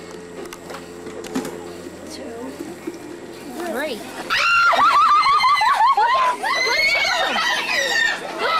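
Young children shrieking and shouting excitedly: a fairly quiet stretch with a faint steady hum, then about four seconds in several high-pitched children's voices break out loudly, their pitch sliding up and down.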